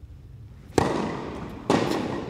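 Tennis racquets striking a ball twice: the serve lands a sharp pop about three quarters of a second in, and the return from the far end comes about a second later. Each hit rings on with the echo of a large indoor court hall.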